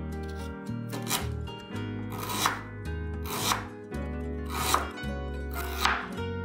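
A chef's knife slicing through fresh ginger root and striking a wooden cutting board, five separate cuts about a second or more apart, each a short rasp ending in a knock.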